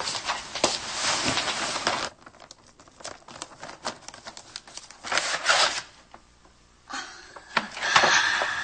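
Wrapping paper being torn and crumpled as a flat, framed gift is unwrapped: rustling bursts at the start, again about five seconds in and near the end, with small crackles between.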